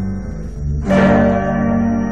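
Instrumental passage of a 1970s progressive folk-rock recording: sustained chords, with a loud new chord struck about a second in that rings on.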